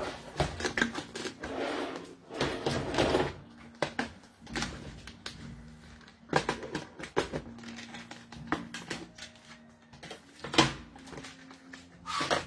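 Handling noise from packets of jewellery being sorted and opened: rustling with a scattered series of small clicks and knocks, and one louder knock near the end.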